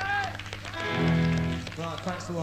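Between songs at a live punk gig taped on cassette: short rising-and-falling voice calls, then a held pitched note of about a second in the middle, the loudest part. A steady low mains hum runs underneath.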